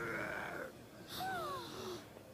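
A cartoon yeti roaring from an animated episode's soundtrack: one held cry, then a shorter one falling in pitch about a second in.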